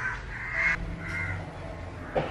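A crow cawing: three caws in quick succession, the middle one the longest and loudest.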